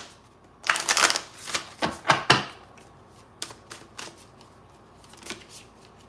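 A deck of reading cards being shuffled by hand: a run of quick card-on-card slaps and rustles in the first couple of seconds, then a few lighter, scattered clicks.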